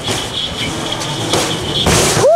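Seatbelt convincer seat sled rolling down its short track, a steady rumble with a faint high whine, ending near the end in a sudden jolt as it stops abruptly at about seven kilometres an hour.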